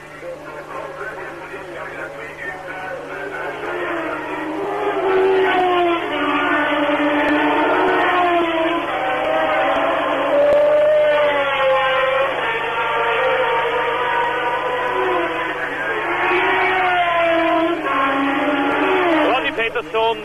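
1970s Formula One cars passing at racing speed, their engine notes gliding up and down in pitch as they go by, several times over. The sound is thin and narrow, as on old television sound.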